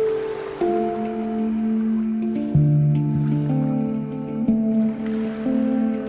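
Handpan played by hand in a slow, unhurried melody: single notes struck every half second to second, each ringing on and overlapping the next, with a deep low note about two and a half seconds in.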